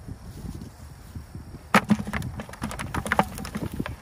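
Low rumble throughout, then from about two seconds in a sharp knock followed by a run of crackling rustles and clicks: handling noise as the monofilament cast net is gathered up off the grass.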